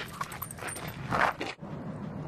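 A Siberian husky close to the microphone, with scattered scuffs and clicks and a short, loud, breathy huff about a second in; the sound cuts off suddenly soon after.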